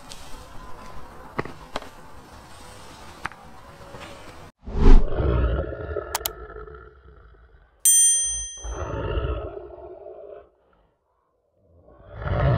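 Low outdoor ambience with a few faint clicks, then an end-screen sound effect: a loud roar about four and a half seconds in, a bright bell-like ding near eight seconds, and a second roar that dies away about ten and a half seconds in.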